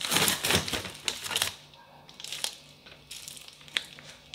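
Plastic bag of bagels rustling and crinkling as it is handled and pulled out of a fridge, loudest in the first second and a half, followed by a few small knocks and clicks.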